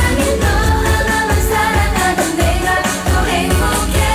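K-pop dance song performed live: female group vocals sung into microphones over a backing track with a steady bass-drum beat, played through a concert sound system.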